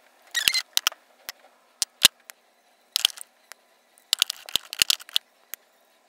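Lip gloss tubes clicking and clattering as hands handle them and set them into the slots of a plastic drawer organizer. It is a string of short sharp clicks with the loudest about two seconds in and a quicker run of clicks between four and five and a half seconds.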